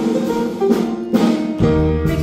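Live band playing an upbeat show number, with guitar and drum hits; a deep bass note comes in near the end.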